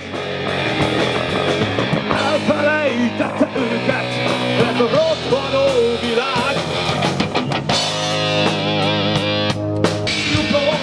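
Live rock band playing loud, driving music: distorted electric guitar over bass and drums, with a bending, wavering melody line near the end.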